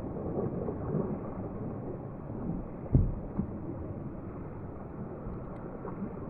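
Faint, muffled low rumble, with one knock about three seconds in and a smaller one shortly after.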